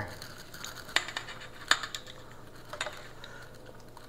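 Metal kitchen tongs clicking lightly against a stainless steel bowl of batter a few times, as a catfish fillet is handled in it.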